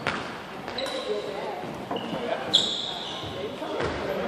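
Badminton rally in a reverberant gym: sharp smacks of rackets hitting the shuttlecock, one right at the start and more about a second and two and a half seconds in, with brief high shoe squeaks on the hardwood floor.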